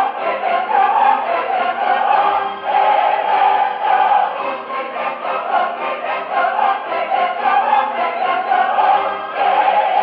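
An opera chorus singing in full voice, with orchestra, on an old live mono recording whose treble is cut off and dull.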